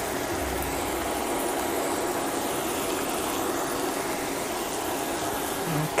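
Sliced red onions sautéing in oil in a stainless steel skillet: a steady, even sizzle.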